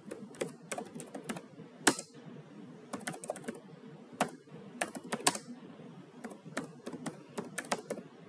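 Computer keyboard typing: irregular keystrokes, some single and some in quick runs, with short pauses between words of code.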